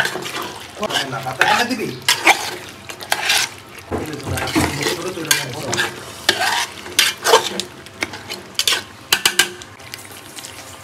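A metal spatula stirring and scraping thick beef and potato curry in a large metal pot. The wet scrapes come irregularly, with occasional sharp knocks of metal on the pot.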